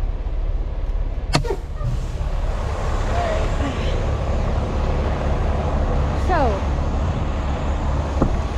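Semi truck's diesel engine idling with a steady low rumble, and a sharp click about a second and a half in as the cab door is opened.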